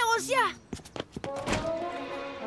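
Cartoon sound effect: a few quick light taps, then one heavy thunk about one and a half seconds in.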